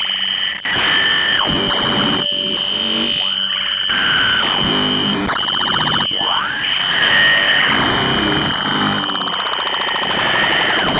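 Experimental electronic noise music: a steady high whine over dense layered buzzing, with sweeping tones that rise, hold and fall again several times.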